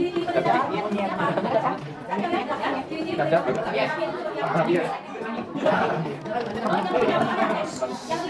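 Chatter of several students' voices talking over one another in a classroom, none of it clear speech.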